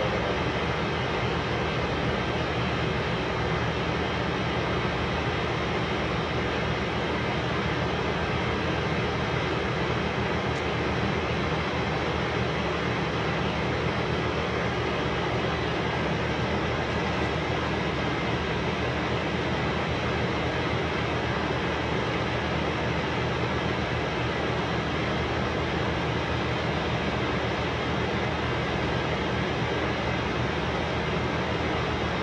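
A loud, steady mechanical drone that holds one even level throughout, with a dense hiss and faint steady tones and no strikes or changes.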